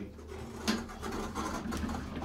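Elevator's two-speed sliding doors opening: a clunk about two-thirds of a second in, then the door panels rattling as they slide open, over a steady low hum.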